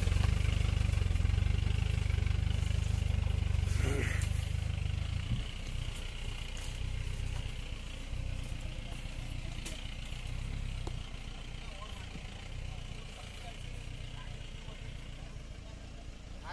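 Mahindra Bolero 4x4's diesel engine running under load as it crawls up a rough dirt trail, a low rumble that drops off after about five seconds and keeps getting fainter as the vehicle pulls away.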